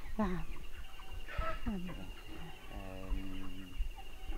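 Free-range chickens clucking in a backyard flock, heard behind a woman's brief words and hesitation.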